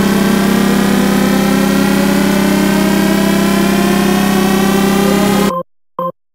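Electronic dance music build-up: a loud, noisy synth riser with many pitches gliding upward over a steady low drone. It cuts off suddenly near the end, leaving a short synth blip.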